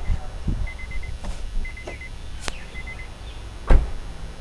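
Inside a 2008 Honda Civic, with a door open, short high electronic beeps come in three brief runs, with a few sharp clicks in between as the boot release is worked. Near the end a heavy thump, the loudest sound, as the car door is shut.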